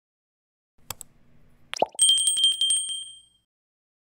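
Subscribe-button animation sound effects: a mouse click about a second in, a quick pop, then a small notification bell rings with a rapid trill for about a second and a half before fading out.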